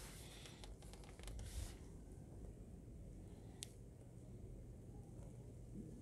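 Faint scratching of a pencil drawing an arc along a plastic French curve on paper, mostly in the first two seconds, with a single small click about three and a half seconds in.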